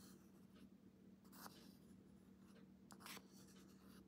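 Faint scraping as cream is transferred into a glass jar, with a couple of soft scrapes over a low steady hum.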